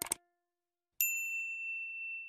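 Subscribe-button animation sound effects: a short mouse click at the start, then about a second in a single high notification-bell ding that rings on and fades slowly.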